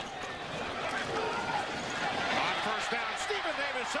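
Indistinct voices over a steady background of stadium crowd noise, as heard on a TV football broadcast.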